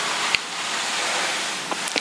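Steady hiss of the recording's background noise, strongest in the high frequencies, with a short click about a third of a second in.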